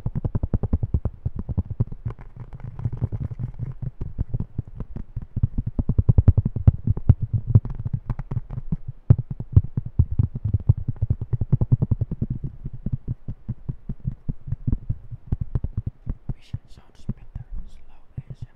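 Fingertips tapping fast on a plastic disc golf disc held close to the microphone, a quick, unbroken run of dull taps.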